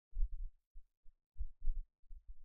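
A few dull, low thumps in irregular clusters, with nothing higher-pitched above them.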